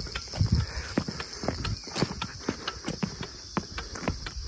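Footsteps on a stone and gravel trail: a walking rhythm of short scuffs and clicks, several a second.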